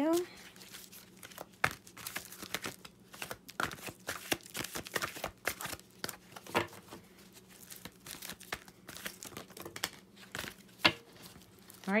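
Large oracle card deck being shuffled by hand: cards sliding and flicking against each other in an irregular run of soft clicks and rustles, with one sharper card tap near the end.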